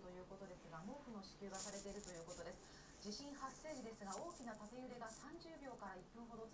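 Faint continuous speech from a television news broadcast playing in the room.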